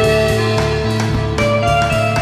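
Instrumental passage of a late-1960s psychedelic rock song: held notes that step to new pitches now and then over a pulsing bass and a steady drum beat.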